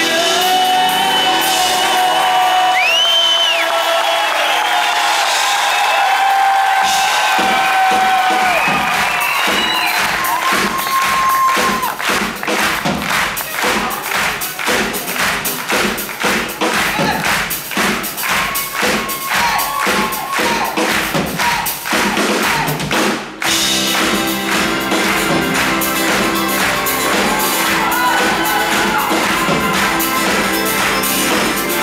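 Live pop-rock band playing: acoustic and electric guitars, bass, keyboards and drums, with a man singing over the opening bars. A steady drumbeat comes in about seven seconds in, drops out briefly about two-thirds of the way through, then carries on.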